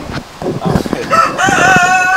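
A rooster crowing: one long call beginning about a second in and held at a steady pitch.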